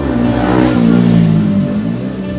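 Saxophone playing a loud, low held note that slides in pitch, over a backing track.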